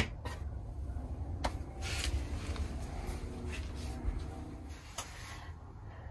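A sharp click as a small lighted round switch is pressed off at the very start, then a low steady hum with a few faint knocks and rustles.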